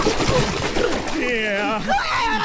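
Water splashing as a man flounders in shallow water, with his voice crying out over it in a fast, wavering warble in the second half.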